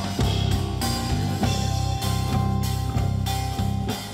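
Live jazz-rock trio playing: an electric bass line and a drum kit keeping a steady beat, with a few held higher notes above.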